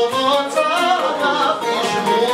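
Male voice singing a Cretan syrtos, accompanied by strummed and picked mandolin and laouto.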